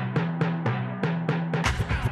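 Instrumental intro of a cartoon theme song: pitched drums struck in a steady rhythm, about four hits a second, each ringing briefly. Near the end the full band comes in with cymbals.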